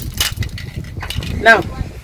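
Close rustling and knocking handling noise with small metallic clinks, and one short spoken word about a second and a half in.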